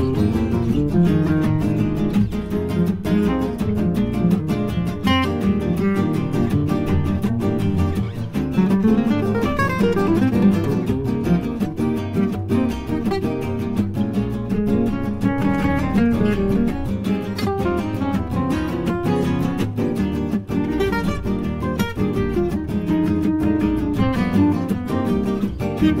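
Instrumental 1930s-style swing jazz, with acoustic guitar strumming a steady beat under the melody.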